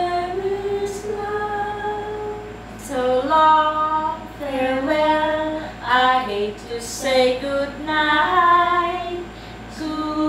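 Women singing a slow tune unaccompanied, in long held notes that step up and down in pitch, with short breaks for breath about three seconds in and near the end.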